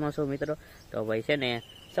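A man talking quickly in Gujarati, with a faint, steady, high-pitched insect trill coming in about one and a half seconds in.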